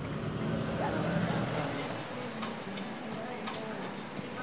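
Outdoor street ambience: a steady hiss of traffic noise with faint voices in the background.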